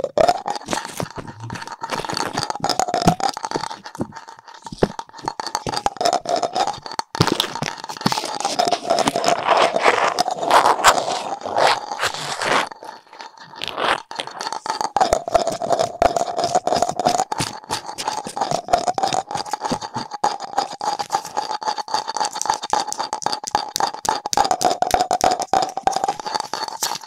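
ASMR handling of small Halloween decorations, a hollow plastic jack-o'-lantern and an orange artificial-leaf ornament, scratched, tapped and rubbed right at a binaural microphone's ears: a dense, unbroken run of little scratches and clicks, busiest about a third of the way in. A faint steady tone runs underneath.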